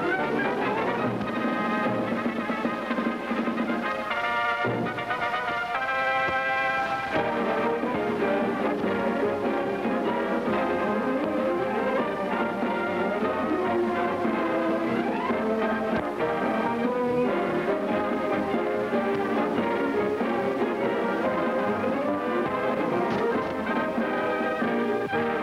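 Orchestral film title music, lively and continuous, led by brass, with quick runs sweeping up and down the scale.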